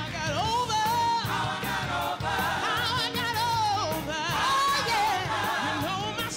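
Gospel singing: a solo voice with wide vibrato and sliding runs over instrumental backing.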